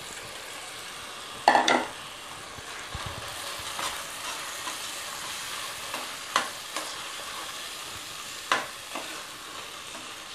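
Rice sizzling in tomato masala in a pressure cooker while a metal ladle stirs it, scraping and clinking against the pot several times. A louder ringing metal clang comes about one and a half seconds in.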